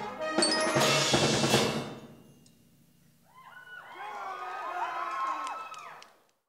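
A school concert band playing the last loud bars of a piece, with drum and cymbal strikes. The music stops about two seconds in and rings away. A few voices are then heard calling out softly.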